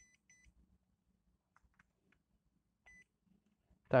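Short, faint electronic beeps from a digital clamp meter as it is switched on and set: two quick beeps at the start and one more about three seconds in, with a few faint clicks between.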